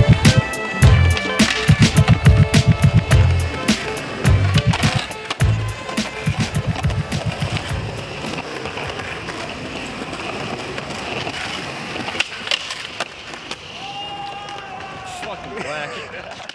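Music with a heavy, regular bass beat fades out over the first half. Skateboard wheels then roll on concrete, with a few sharp clacks from the board.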